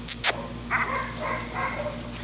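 Puppies vocalising at play: a couple of sharp clicks near the start, then a high-pitched whine held for about a second.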